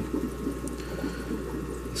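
Steady, soft water noise in an aquarium with a low electrical hum underneath.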